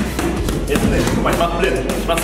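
A few thuds of boxing gloves striking focus mitts, with a man's voice over them.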